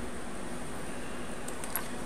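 Electric fan running steadily: an even hiss of moving air with a faint steady hum underneath. A few faint clicks come near the end.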